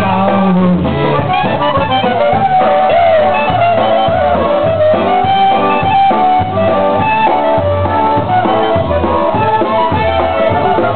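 Live polka band playing an instrumental passage: a melody line on accordion and reeds over a drum kit and a steady bass note on every beat.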